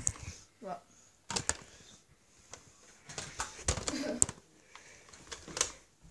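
Scattered clicks and knocks of close handling noise in a small room, with a few faint voice sounds.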